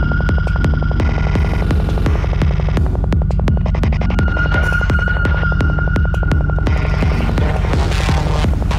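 Psytrance music: a fast rolling bassline under a steady, quick beat, with a high held synth note that drops out about two seconds in and comes back about halfway through.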